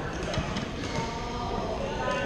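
Badminton hall sounds: a few sharp clicks of rackets hitting shuttlecocks on nearby courts in the first second, over background chatter in the large gym.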